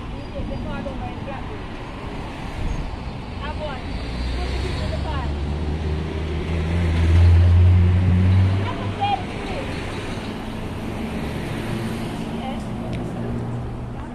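Car engine running at idle close by, with road traffic. About halfway through, a deeper engine sound swells to the loudest point and fades a couple of seconds later.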